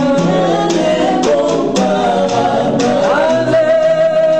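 Several voices singing a slow gospel worship song together, accompanied by a strummed acoustic guitar; about three seconds in, one voice slides up to a long high note.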